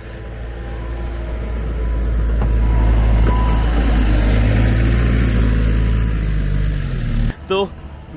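Compact wheel loader's diesel engine running as it clears snow with a front plough blade: a low, steady drone that grows louder over the first three seconds, holds, and cuts off abruptly about seven seconds in.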